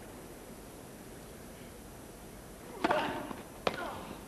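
Hushed crowd, then a tennis ball struck hard by a racket nearly three seconds in, followed by a second sharp racket strike under a second later: a serve and its return.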